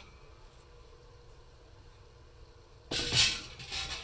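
Faint steady hum of a Breville smart air fryer oven running on bake. About three seconds in, a loud burst of noise lasting about a second.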